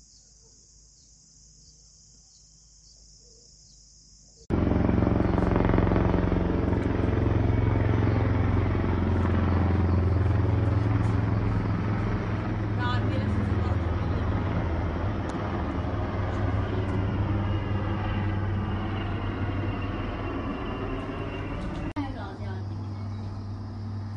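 Faint insect chirping, then, cutting in abruptly about four and a half seconds in, the loud steady low drone of a helicopter flying overhead, which slowly fades.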